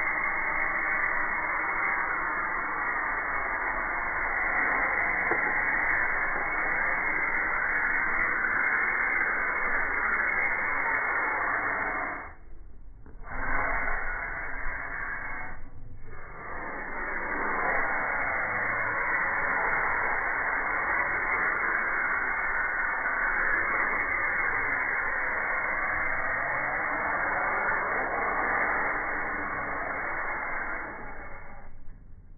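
Aerosol spray paint can spraying in a long, steady hiss, cut off twice briefly a little before halfway through when the nozzle is let go.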